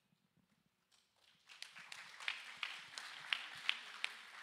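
Light, scattered applause from a small audience: a soft patter of clapping swells in about a second in, with a few individual sharp claps standing out.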